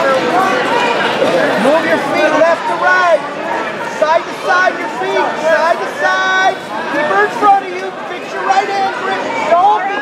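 Crowd of spectators and coaches talking and calling out in a gymnasium, many voices overlapping. One voice holds a high call briefly, about six seconds in.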